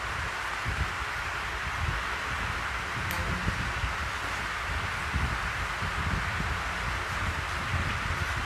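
Steady hiss of background noise with faint low rumbling underneath, and one brief click about three seconds in.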